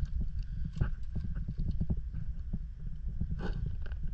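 Footsteps over a rocky, pebbly shore: uneven knocks and crunches of feet on stones, a more prominent one about three and a half seconds in, over a steady low rumble.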